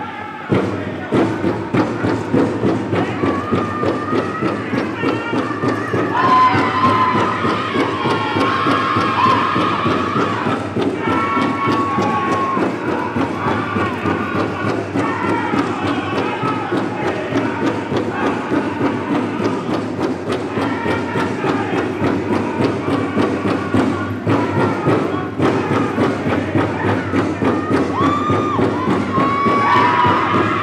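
Powwow drum group playing a fast, steady beat on a big drum, with singers singing high-pitched lines over it: a song for Women's Fancy Shawl dancing.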